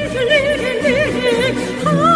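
A woman singing a Korean song with a wide, wavering vibrato over instrumental backing.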